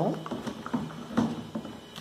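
Long wooden stick stirring thick homemade liquid soap in a plastic bucket, with a few light knocks and scrapes against the bucket, the sharpest about a second in.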